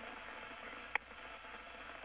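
Steady hiss of an open space-shuttle air-to-ground radio link between speakers, with one short click about a second in.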